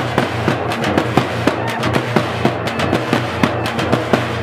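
Frame drums (dappu) beaten in a fast, driving rhythm of sharp, cracking strokes, about five a second, over a steady low hum.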